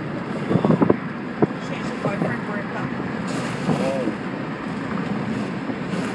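Steady road and engine noise inside a car moving along a highway, with brief bits of muffled talk.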